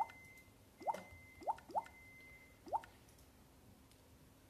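A smartphone's keypad tap sounds from its small speaker as number keys are pressed on the dialer: five short blips, each a quick upward glide, about a second apart and then two close together.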